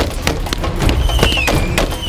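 Rapid, irregular bangs and pops of battle-simulation pyrotechnics over a steady low rumble, with a whistling tone that slides down about a second in.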